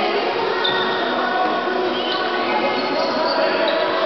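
Many voices of players and onlookers talking and calling in a reverberant gymnasium, with a basketball bouncing on the wooden court.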